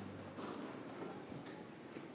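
Faint, scattered small knocks and shuffling echoing in a large church, just after a held musical chord stops at the very start.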